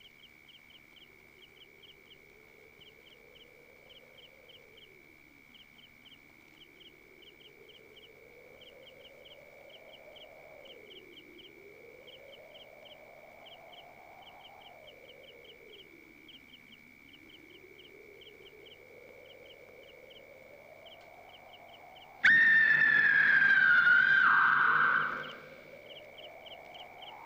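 Film soundtrack of night insects: a steady high trill with short chirps in quick groups of three or four, over a low eerie tone that slowly rises and falls. About 22 seconds in, a loud shrill whistle-like tone cuts in suddenly, holds for about three seconds, drops in pitch and fades.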